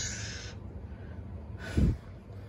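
A man's breath, a hissing exhale at the start, then a short low vocal sound like a grunt or hum near the end.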